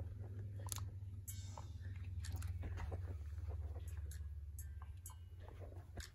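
Microphone handling noise on a phone recording: a steady low hum with irregular crackles and clicks as the phone and wired earbuds are moved about.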